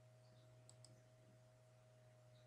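Near silence with a faint steady hum, broken about three-quarters of a second in by two quick, faint computer-mouse clicks.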